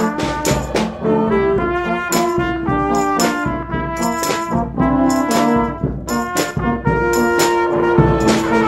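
Instrumental brass music led by trombone and trumpet over a low bass line. Sharp percussion strikes accent the beat.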